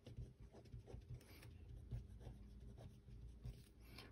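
Faint scratching of a fine felt-tip pen writing on paper, in a series of short strokes.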